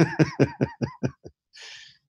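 A person laughing: a quick run of about eight 'ha' pulses that fade away over about a second, followed by a breath.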